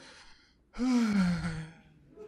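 A man's drawn-out wordless vocal sound, like a long sigh or 'hmm', about a second long and falling in pitch, after a brief hush.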